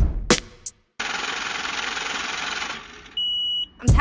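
The last drum hits of an advertisement's backing music. After a brief silence comes about two seconds of steady hiss, then a single short, steady high-pitched beep near the end.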